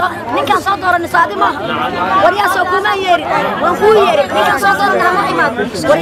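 Speech: a woman speaking loudly and heatedly, with other voices overlapping in a crowd.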